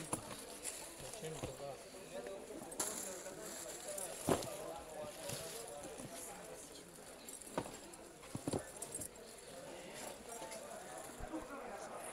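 Quiet handling of leather bags being lifted out of a cardboard box, with a few light knocks and rustles, under faint background chatter.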